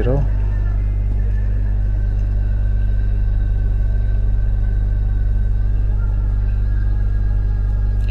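Steady low electrical hum with a stack of evenly spaced overtones, the mains hum picked up by the narration microphone or recording setup.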